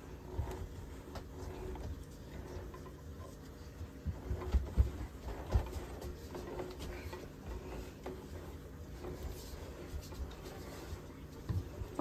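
Handheld crank can opener being turned around the rim of a large steel can: faint, irregular clicking and scraping as the cutting wheel works through the lid.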